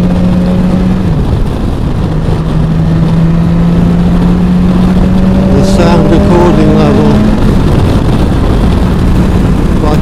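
BMW S1000XR's inline-four engine running at a steady cruise under heavy wind and road noise. Its note climbs slightly, then drops about seven seconds in as the throttle eases.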